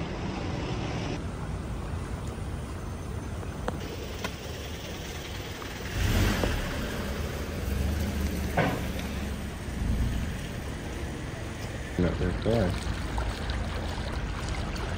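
Street ambience: a steady background hiss with a car passing close by, swelling and fading from about six to ten seconds in, and a sharp click in the middle. A brief spoken "yeah" comes near the end.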